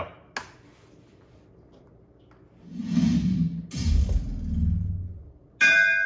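A video's intro logo sound: a single click just after the start, then a low swelling whoosh that builds about three seconds in, and near the end a bright bell chime struck once and left ringing.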